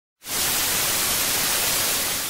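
Television static: a steady, even hiss of white noise that starts just after the beginning.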